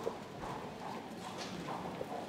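Footsteps and a wheeled suitcase rolling across a tiled floor: an uneven string of light clicks and knocks.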